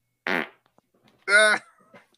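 Two short, loud buzzy sounds about a second apart, the second louder and held at one pitch.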